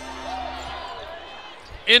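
Live basketball game sound in an arena: faint voices and murmur over a steady hum, with the ball bouncing on the hardwood court.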